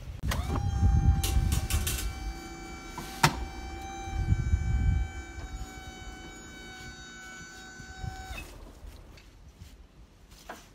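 A hive boom loader's motor and hydraulic pump whining at one steady pitch over low rumbling, cutting off abruptly about eight seconds in, with a sharp knock about three seconds in.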